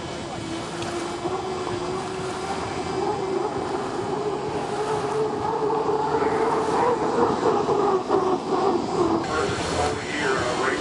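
Turbine engine of an Unlimited hydroplane running at racing speed: a steady whine that grows louder as the boat passes close, loudest about seven to nine seconds in.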